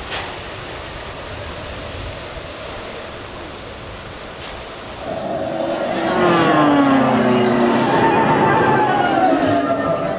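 A train passing on the railway bridge above, its wheels squealing in slowly sliding tones. This starts about five seconds in, over a steady background of crowd noise.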